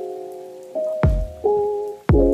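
Background music: held chords that change twice, with one deep drum hit about a second in.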